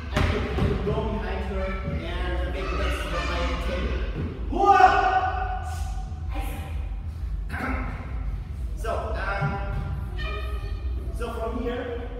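Indistinct voices of people talking, echoing in a large hall, with a few thuds and a steady low hum underneath.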